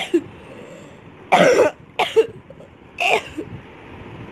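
A girl coughing in a fit: a short cough at the start, then three harsh coughs about a second apart.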